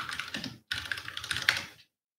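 Typing on a computer keyboard in two quick runs of keystrokes, the second longer, while entering a web search.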